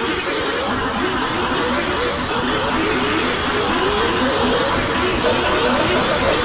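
A dense din of many soundtracks playing over each other at once: music mixed with many overlapping tones and voices sliding up and down in pitch, with engine-like noise underneath, growing slightly louder.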